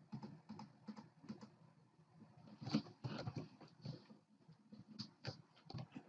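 Faint, irregular clicks and short taps from working a computer drawing program, with one louder tap about three seconds in.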